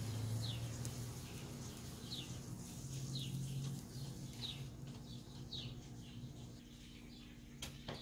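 A small bird chirping faintly in the background, with short falling chirps about once a second, over a low steady hum. A single click comes near the end.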